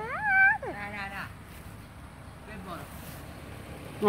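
A short, high-pitched vocal call in the first second that rises, holds briefly and then drops, followed at once by a brief voiced sound. The rest is quiet background.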